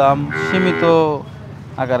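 A single long moo from a bovine, lasting just under a second and falling in pitch at the end.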